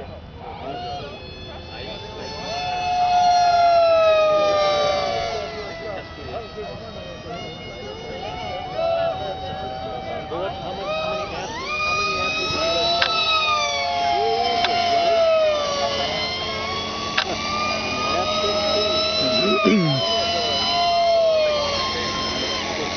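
Electric R/C model airplane's motor and propeller whining in flight. The pitch climbs and drops with the throttle and falls away as the plane passes, and it is loudest about four seconds in.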